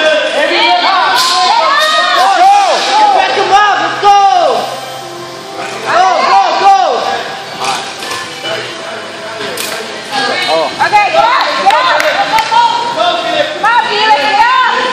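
Several voices shouting and cheering over background music, echoing in a large gym hall, with a couple of sharp knocks from equipment.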